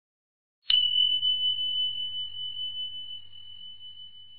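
A single bell ding, struck about a second in, one clear high note that rings on and slowly fades: an edited-in sound effect.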